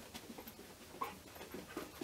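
A dog breathing in short, quick, irregular breaths as it moves around the room searching for scent, with a single sharp click about a second in.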